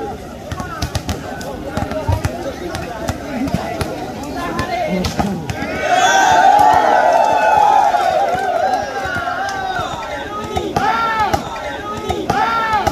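Volleyballs being hit in warm-up drills, with repeated sharp smacks of hands on the ball, over the voices of a large crowd. About six seconds in, the crowd breaks into loud shouting, and a few short calls ring out near the end.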